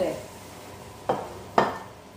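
Two sharp clinks of a utensil against a dish, about half a second apart, the second louder, over a faint steady hiss.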